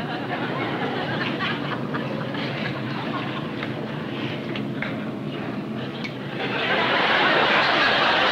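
Studio audience laughing over a steady background noise, the laughter growing louder about six and a half seconds in.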